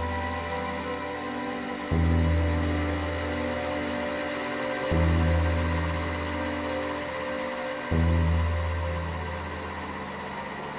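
Slow ambient electronic music from Cherry Audio Elka-X and PS-3300 software synthesizers played from a keyboard. Held pad tones carry throughout, and a deep bass note comes in every three seconds: about two, five and eight seconds in.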